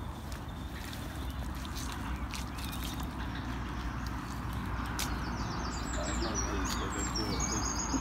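Footsteps squelching through mud and puddle water on a waterlogged footpath, over a steady low rumble. From a little past halfway, a bird chirps repeatedly in short high notes.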